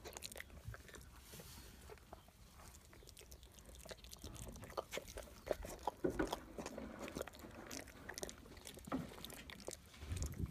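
Young foal suckling at the mare's udder: soft, irregular wet smacking and sucking clicks, a little busier in the middle.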